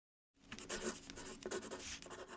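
Pen-on-paper writing sound effect: a quick run of scratchy strokes, starting about a third of a second in, matching handwritten lettering being drawn onto the screen.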